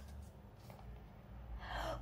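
Quiet room with a faint low hum, then near the end a short audible intake of breath, growing louder, just before speaking.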